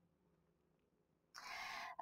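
Near silence, then a soft intake of breath lasting about half a second near the end, just before speech resumes.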